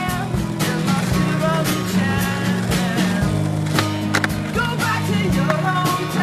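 Skateboard wheels rolling on asphalt, with several sharp clacks of the board during flatground tricks, under background music.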